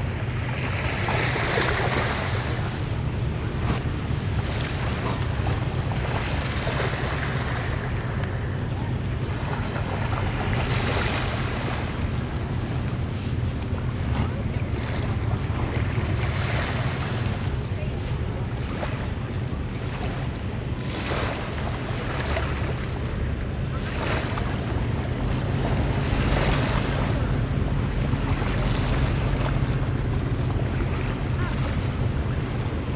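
Small waves washing in the shallows, swelling and easing every few seconds, over a steady low rumble of wind on the microphone.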